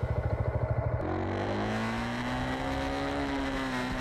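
Motorcycle engine running during a ride: a fast, pulsing chug for about the first second, then a smoother hum whose pitch rises gradually and eases back down.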